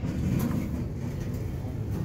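OTIS-LG passenger elevator car running, a steady low rumble heard from inside the cab.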